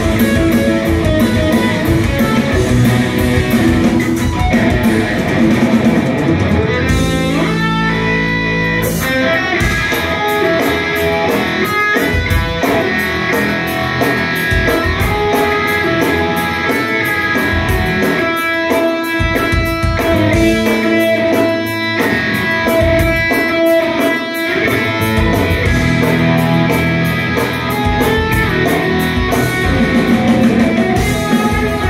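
A live instrumental rock trio playing loudly, with electric guitar, electric bass and drum kit heard through the venue's sound system from the audience. Fast, regular cymbal strokes drive most of it, and the drums briefly drop back about seven seconds in.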